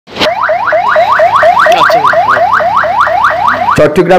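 Electronic siren in a rapid yelp: a quick upward sweep repeated about four times a second, each sweep dropping back sharply. It cuts off near the end as a man starts speaking.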